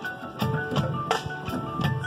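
Marching band playing, with sharp percussion hits at a regular pulse and ringing mallet-percussion notes over sustained pitched tones.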